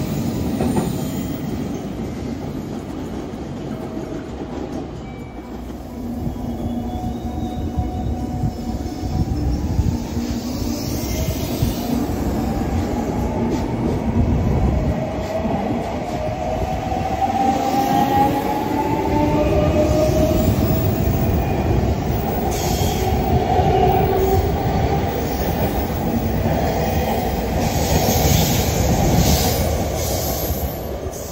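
JR Kyushu electric trains running past at a station: a steady rumble of wheels and running gear on the rails, with tones rising in pitch through the middle of the stretch.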